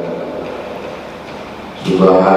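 A man's voice chanting in long held tones fades away and leaves a quieter stretch. Near the end the chant starts up again suddenly and loudly.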